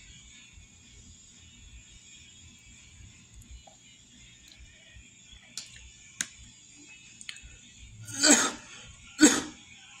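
A man coughs twice near the end, about a second apart, after a swig of salad dressing from the bottle. Before that there are a few light clicks from handling the plastic bottle and cap, over a low steady hum.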